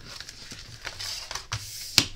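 Large cardstock pillow box being handled and laid flat on a cutting mat: soft paper rustling with a few light taps, a knock about one and a half seconds in and a sharp tap at the very end.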